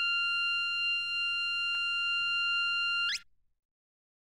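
A steady high-pitched tone with a stack of overtones, held for about three seconds, then swooping sharply upward in pitch and cutting off suddenly. A faint click sounds near the middle.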